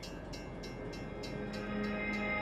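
Train rumbling and slowly growing louder, under soft music with a repeating note struck about three times a second; a low held note enters near the end.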